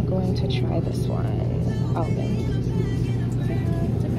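Grocery store background: a steady low hum and rumble, with faint voices in the mix.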